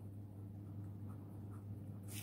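Pen writing on paper, faint scratching strokes as a word is written out by hand.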